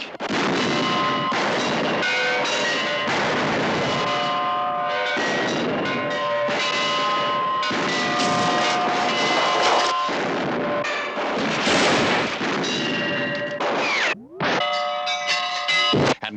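Heavy film gunfire from a western shootout: shots and their echoes come almost without a break, mixed with ringing, bell-like tones and music. There is a brief break near the end.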